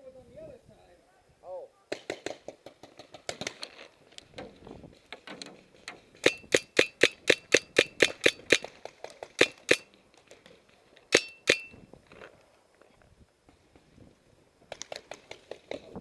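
Paintball marker firing: a rapid string of sharp pops at about four a second, with shorter bursts and a couple of single shots before and after.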